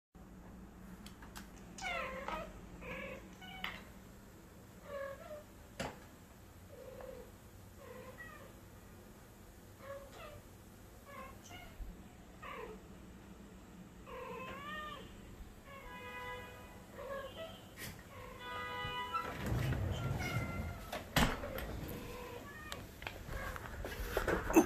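Two cats' meows and chirping calls played back from a computer monitor's speakers, short calls bending in pitch a second or two apart, with a run of steadier buzzing calls a few seconds before the end. Rustling handling noise grows louder over the last few seconds.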